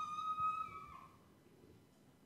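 A high whistle-like tone that glides up and holds steady for about a second, then fades, leaving quiet room tone.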